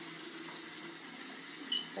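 A steady, faint hiss in a small tiled room, with a brief high squeak near the end.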